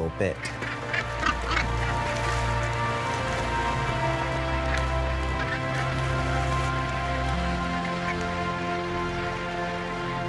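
Harsh calls of a seabird colony, northern gannets, heard mostly in the first couple of seconds, under background music of held chords whose bass note shifts twice.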